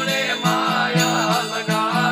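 Gujarati folk devotional bhajan: a man sings over a steady drone from long-necked stringed instruments, with small hand cymbals (manjira) and a regular beat of about three strokes a second.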